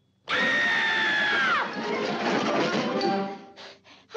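A loud cartoon sound effect: a noisy clamour with a whistle-like tone that slides downward, starting suddenly after a moment of silence and lasting about three seconds.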